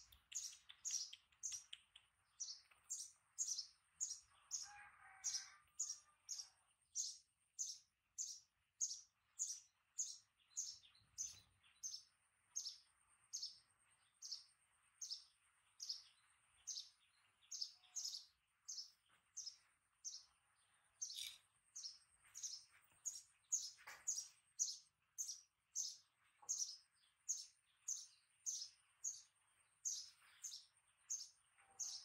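A bird calling over and over, short high falling chirps about twice a second, with a faint steady high-pitched tone behind them.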